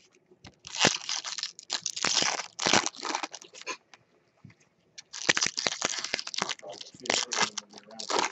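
Foil wrappers of baseball-card packs crinkling and tearing as packs are opened, along with cards being flicked through by hand. The rustling comes in two spells, with a pause of about a second and a half near the middle.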